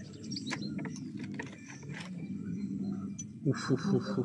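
A knife and fork cutting through a breaded schnitzel on a wooden serving board, with a few light clicks of the cutlery over a steady low background hum. A man's voice comes in near the end.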